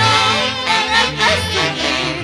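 Live Andean tunantada band music: saxophones play a wavering, vibrato-laden melody over a steadily stepping bass line.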